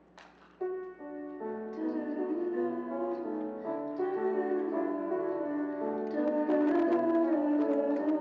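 Piano introduction to a song starting about half a second in, just after a short click, and growing louder as chords build.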